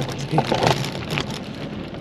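A mountain bike's knobby tyres rolling over loose sandy dirt and grit, with a steady crackle of many small sharp clicks from the stones and sand under the tread.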